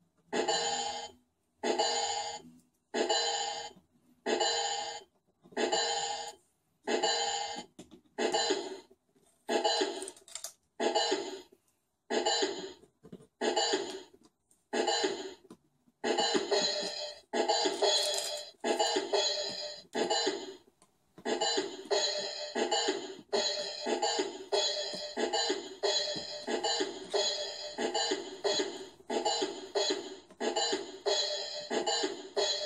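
Kawasaki I-Sounds electronic drum pads triggered by a 4017-based gate sequencer. A single pitched electronic percussion sound repeats about once a second. About halfway through, as more steps are patched in, it becomes a busier rhythm of two to three hits a second, with a brief break a few seconds later.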